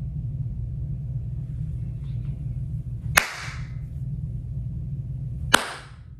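Two sharp cracks about two and a half seconds apart, each with a short hissing tail, over a steady low hum.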